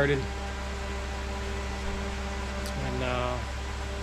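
Steady hum of an electric fan running, with a short wordless vocal sound from a man about three seconds in.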